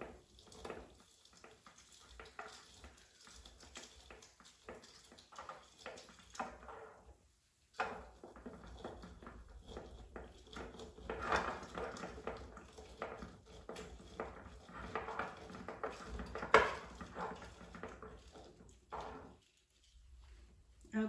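A lemon half being twisted and pressed by hand on a plastic citrus reamer over a glass jar: faint, irregular rubbing and squeezing with scattered small clicks and one sharper click near the end.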